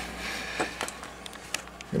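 Faint handling noise with a few light clicks as the small metal amplifier chassis and its cables are moved and turned around, over a low steady hum.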